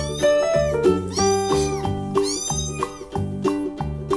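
A cat meowing, about three drawn-out meows that each rise and fall in pitch, over background music with a regular beat.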